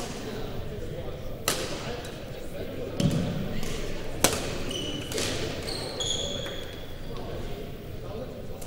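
Badminton rally: rackets strike the shuttlecock with sharp, echoing hits about every second and a half, five in all, the loudest about four seconds in. Sneakers squeak on the court floor in short chirps in the second half.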